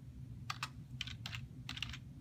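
Typing on a computer keyboard: a handful of separate keystrokes, irregularly spaced.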